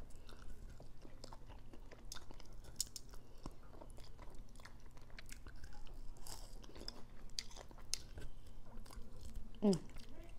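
A person chewing and gnawing meat off a chicken wing bone, close to a clip-on microphone: irregular small clicks of eating all through.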